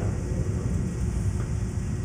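Steady low rumble of background room noise with no distinct events.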